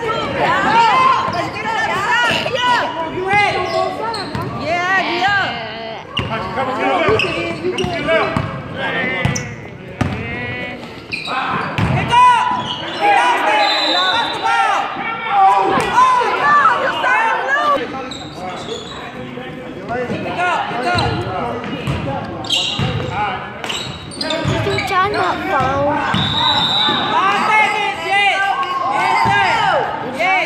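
Indoor basketball game on a hardwood gym floor: the ball bouncing, with many short sneaker squeaks as players run and cut. It echoes in a large hall, with players' voices calling out.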